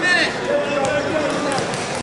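Spectators' voices shouting and calling out over the hall hubbub, with a high shout at the start and a few faint knocks about one and a half seconds in.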